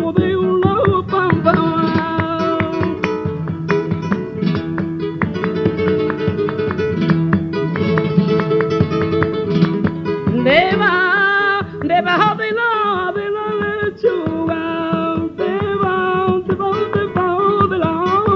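Flamenco guitar playing bulerías, quick strummed chords over held bass notes, on an old recording with little treble. About ten seconds in, a woman's voice comes in with a rising, ornamented sung phrase over the guitar.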